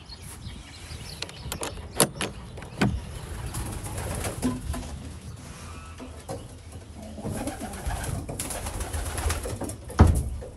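Domestic pigeons cooing in a wooden loft, with two sharp clicks about two and three seconds in.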